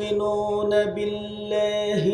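A man's voice chanting in long, held melodic notes through a public-address system, with brief dips in pitch between phrases.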